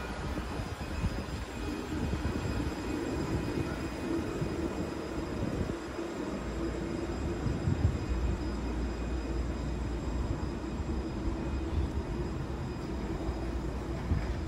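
Alstom Citadis 302 tram at a platform: a steady low rumble with a faint even hum from its running gear and electric equipment, swelling slightly about halfway through.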